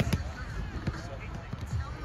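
Roundnet ball being served: a hand slapping the small rubber ball and the ball snapping off the taut net, two sharp smacks a split second apart right at the start.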